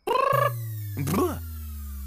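A cat-like meow at the start, with a second short cry about a second in, over a low held musical tone that slides slowly down in pitch: a comic sound effect in a film's score.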